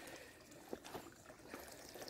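Faint trickle of water from a pool return pipe running into an above-ground pool at low flow, the circulation pump set to minimum.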